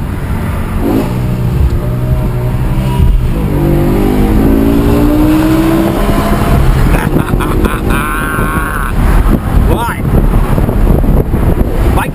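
2010 BMW M6's naturally aspirated V10, heard from inside the cabin, revving hard under acceleration. Its pitch climbs, drops abruptly at a quick upshift about three seconds in, then climbs again before easing off around six seconds.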